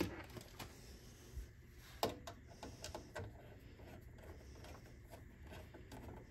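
Faint small clicks and scrapes of a screwdriver working the CPU tower cooler's mounting screws, with one sharper click about two seconds in.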